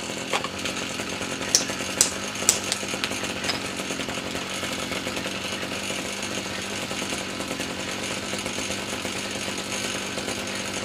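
Small two-stroke string-trimmer engine running steadily after starting, with a spark plug test light in the plug lead. There are three sharp clicks between about one and a half and two and a half seconds in.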